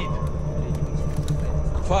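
A steady low rumble of submarine control-room machinery from a film soundtrack, with a man's voice starting an order right at the end.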